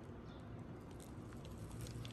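Faint, scattered light crackles from a pita sandwich being handled in its crumpled paper wrapper.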